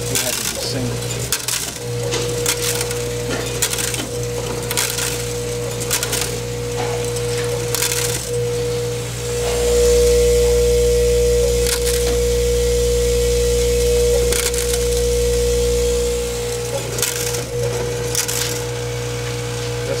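Vibratory bowl feeder of a Batchmaster III counter humming steadily, with small dental brace parts clicking and rattling as they feed along the track and drop through the counting chute. From about ten seconds in to about sixteen seconds the hum grows louder and deeper.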